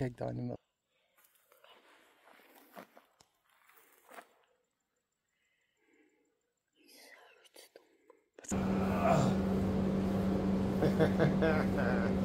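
Near silence with faint whispered voices. About eight and a half seconds in, a steady low hum starts suddenly, with voices over it.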